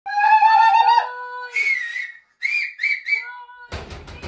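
High-pitched whistling: a long wavering note for about a second, a breathy shriek, then three short rising-and-falling whoops. A sudden burst of noise comes in near the end.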